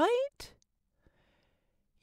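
A woman's narrating voice ends a question on a rising pitch, followed by a short breath and then a silent pause.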